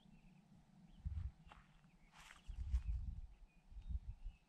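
Outdoor ambience on a moving, handheld microphone: irregular low rumbles about a second in and again through the second half, a brief rustle around two seconds in, and faint short high chirps in the background.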